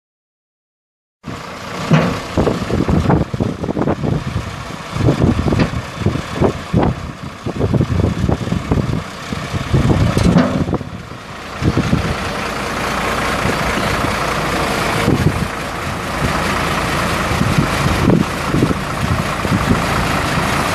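Caterpillar 3116 turbo diesel inline-six of a 1994 Chevrolet Kodiak dump truck running as the truck moves about the lot, starting about a second in. The sound is uneven with irregular low bumps at first and steadier from about halfway.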